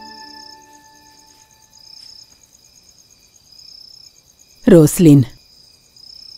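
Crickets chirping steadily, with a louder chirp about every two seconds, as low sustained organ music fades out in the first second or so. Near the end a voice speaks two short, loud syllables.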